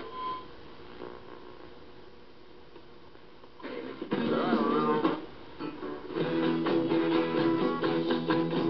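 General Electric clock radio playing broadcasts through its small speaker. There are a few seconds of faint hiss between stations, then a station with guitar music comes in about three and a half seconds in.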